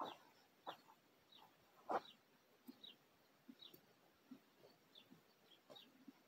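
Near silence with faint, short bird chirps recurring about once a second, and three soft knocks in the first two seconds.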